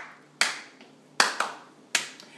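Four sharp snaps made with a person's hands, each dying away quickly, the middle two close together.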